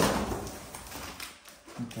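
A sudden thud with a rustle as a foot shoves a blanket and folded cardboard on a hard floor and the cardboard flops flat, followed by a few faint taps.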